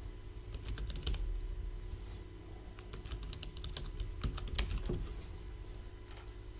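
Typing on a computer keyboard: a short run of keystrokes about half a second in, then a longer run from about three seconds in.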